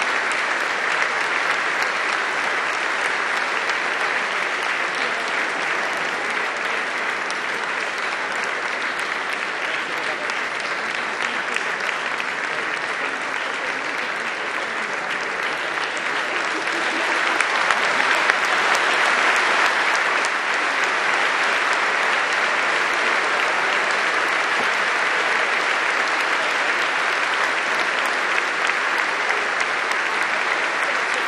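Large audience applauding steadily, swelling a little louder just past the middle.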